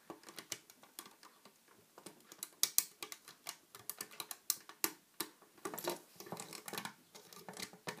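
Irregular light clicks and taps of a metal crochet hook against the plastic pegs of a Rainbow Loom as rubber bands are pushed back and lifted onto the next peg.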